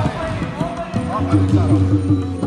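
A volleyball being struck and hitting the hard court during a rally, with a sharp hit right at the start, heard over background music and voices.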